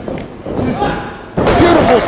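A wrestler's body slamming onto the ring canvas about one and a half seconds in, a sudden heavy thud, with voices shouting around it.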